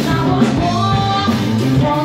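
Live rock band playing: a woman sings held notes over electric guitar, bass guitar and a drum kit.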